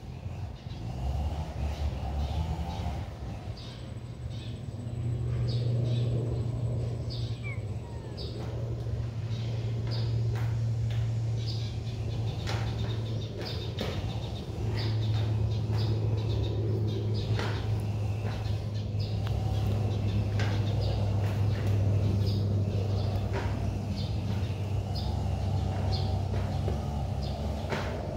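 A steady low rumble, with small birds chirping in many short, repeated calls over it.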